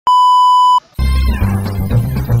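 A steady high test-tone beep, the kind used as a colour-bars transition effect, lasts just under a second. After a moment of silence, background music with a heavy bass comes in about a second in.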